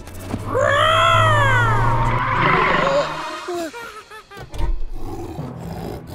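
Cartoon lion roar: one long pitched roar that rises and falls, followed by a few shorter growls and a low thump about four and a half seconds in.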